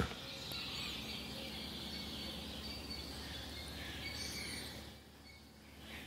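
Quiet background during a pause in speech: a faint steady hiss and low hum, with a couple of faint high chirps about a second in and again after four seconds.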